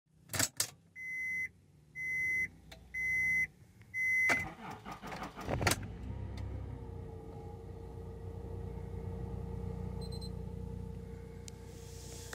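Inside a 2002 Acura MDX: a couple of clicks, then four electronic warning chimes about a second apart from the dashboard. Two clunks follow, then a steady low hum.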